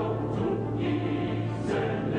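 Background music with a choir singing sustained notes.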